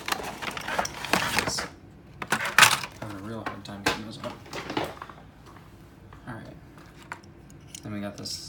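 Handling of die-cast toy cars and clear plastic blister packaging on a metal tabletop: a few short bursts of crinkly plastic rustling, the loudest about two and a half seconds in, with light clicks and clinks.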